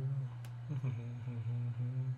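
A man humming a tune with his lips closed, in a run of short held notes that step up and down in pitch.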